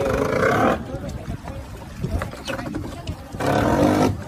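Gray whale breathing at the surface at close range: two loud, rough blows through its blowholes, one at the start and one near the end, about three seconds apart.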